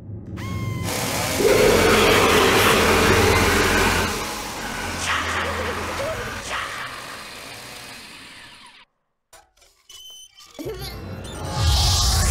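A loud, harsh mechanical noise like a power tool, a cartoon sound effect mixed with music, fades out over several seconds. After a short gap another loud noise starts near the end.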